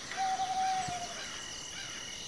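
A bird's single clear hooting note, held steady for about a second and dropping slightly at the end, over a steady high-pitched insect drone.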